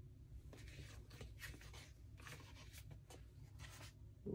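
Faint rustling and brushing of paper being handled: sticker sheets and planner pages slid and touched by hand, in a string of short soft scrapes.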